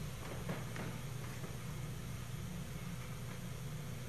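Steady low room hum with faint hiss, and a brief faint rustle about half a second in.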